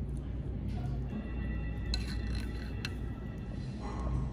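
Restaurant background sound: a steady low hum with faint music, and two light clinks of tableware about two and three seconds in.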